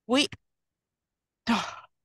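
A short sigh about a second and a half in: a breathy out-breath with the voice sliding down in pitch, just before the speaker goes on talking.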